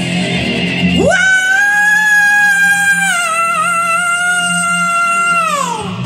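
Hard rock music in which a single high note slides up about a second in, is held with a slight waver for about four seconds, and falls away just before the end, over a steady low backing.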